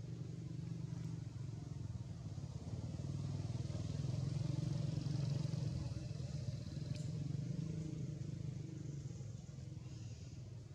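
A motor vehicle's engine hum, low and steady, growing louder toward the middle and fading again as it passes. A single sharp click comes about seven seconds in.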